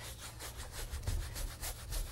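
Wide bristle brush scrubbing Magic White onto a canvas in quick back-and-forth strokes, a dry rubbing scratch laid down as an even base coat.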